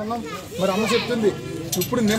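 Speech: people's voices talking, with no other clear sound.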